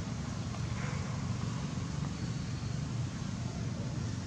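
Steady low rumbling background noise outdoors with no distinct event in it.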